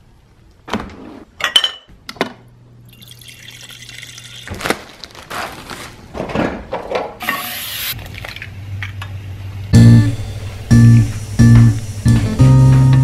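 Kitchen handling noises: scattered clicks and the crinkling of a plastic bread bag being opened. About ten seconds in, guitar music starts loudly with a few strummed chords over a deep bass.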